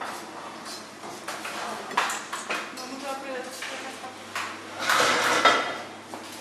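Plates and serving utensils clattering on a stainless-steel kitchen counter as platters are filled, with a few sharp clinks, the loudest cluster about five seconds in. Voices talk in the background.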